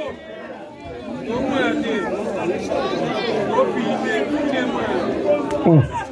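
A crowd of spectators talking and shouting over one another, many voices at once. Near the end a man's voice exclaims "oh".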